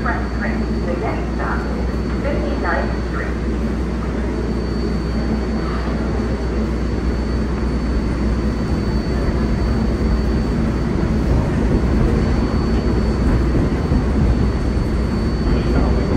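An R142-series subway train standing at the platform with its doors open: a steady hum and rumble from its onboard equipment and ventilation, with a faint steady high whine, growing slightly louder in the second half. Passengers' voices are heard early on.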